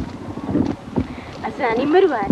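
A few sharp knocks and rustling in the brush, then near the end a woman's voice calls out in a rising and falling tone, without words.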